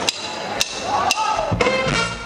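A tempo count-in of three sharp clicks about half a second apart. The big band's horns and rhythm section come in together about a second and a half in.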